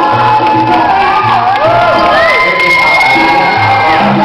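Salsa music playing loudly, with the audience cheering and whooping over it in many rising and falling calls, one high call held for nearly two seconds near the end.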